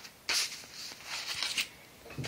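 Stiff black cardstock album pages being handled and flipped: a sharp papery swish about a third of a second in, then softer rustling that fades out.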